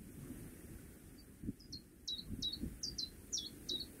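A small bird chirping, a run of short high notes each dropping sharply in pitch, about two a second, beginning about a second and a half in. A low uneven rumble with a few soft thumps runs underneath.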